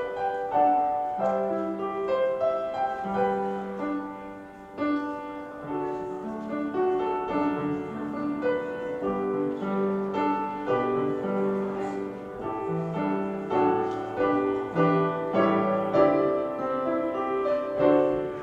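Grand piano played solo: a melody over lower bass notes, each note struck and left to ring.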